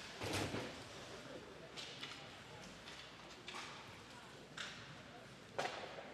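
Faint ice hockey rink sounds during live play: about five short knocks and scrapes from skates, sticks and puck on the ice, the loudest just after the start.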